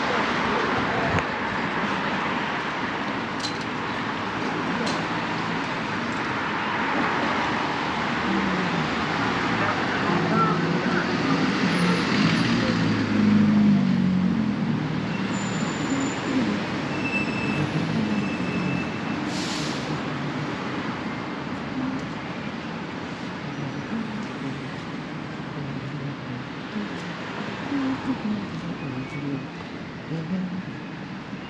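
City street traffic passing along the road beside the sidewalk, a steady rush of vehicles that swells to its loudest about halfway through as an engine goes by, then eases off.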